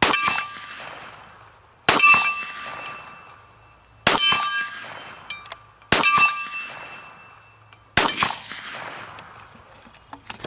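4.2-inch Ruger Redhawk .44 Magnum revolver fired double action, five shots about two seconds apart. Each shot is followed by the ringing of the struck steel target and a long fading echo. The last shot, near the end, empties the six-shot cylinder.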